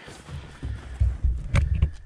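Camera handling noise: irregular low thumps and rumble as the camera is moved and turned, with one sharp click about a second and a half in.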